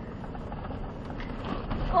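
Low, steady rumble of a Ford Raptor truck heard from inside its cabin as it crawls slowly over a rocky dirt trail, the engine near idle and the tyres rolling on gravel.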